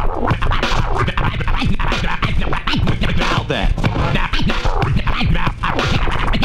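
Turntablist scratching records on two turntables through a DJ mixer: rapid back-and-forth scratches making short rising and falling pitch sweeps, cut in and out over a beat.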